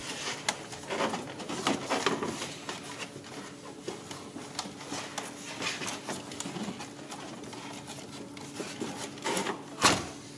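Rubber ribbed serpentine belt rubbing and scraping against pulleys and engine parts as it is pulled out of the engine bay by hand, with scattered light knocks and a sharper, louder knock just before the end.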